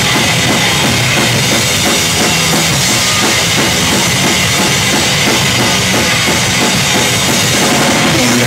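Hardcore punk band playing live, loud and dense, with a driving drum kit (bass drum and snare hits) at the front of the mix.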